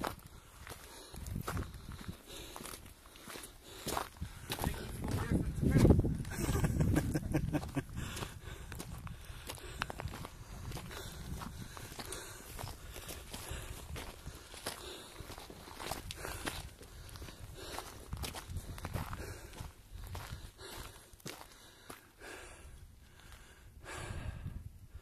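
Footsteps crunching over loose stones and gravel, a steady walking pace of crunches, with a louder low rumble about six seconds in.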